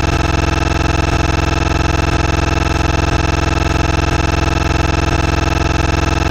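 A loud, steady electronic drone: a held synthesizer tone made of many pitches at once, unchanging throughout.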